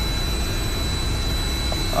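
Steady running noise of a powered-up Bombardier Global 7500's electronic equipment bay: air and cooling fans with a low rumble and a thin, steady high whine.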